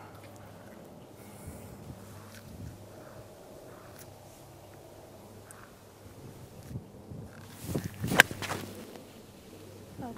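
A golf club striking the ball on a tee shot: one sharp crack about eight seconds in, with a short swish of the swing just before it.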